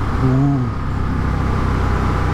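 Indian FTR 1200's V-twin engine running steadily on the road through its Akrapovic exhaust, with wind rush over the microphone.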